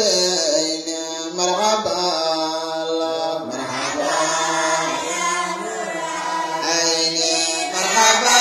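A young man chanting a devotional Islamic qasida in praise of the Prophet Muhammad into a microphone, in long, drawn-out notes that bend slowly in pitch.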